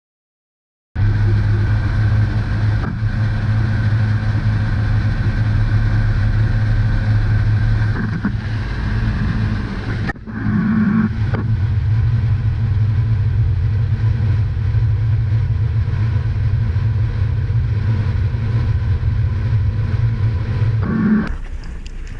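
Small fishing boat's engine running steadily at speed, a loud low hum. It starts about a second in, breaks briefly near the middle, and changes and falls away near the end.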